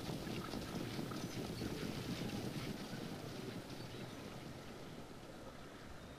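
Faint outdoor racetrack ambience: a steady noise of wind on the microphone and open air, with some faint ticks in the first few seconds, slowly dying away towards the end.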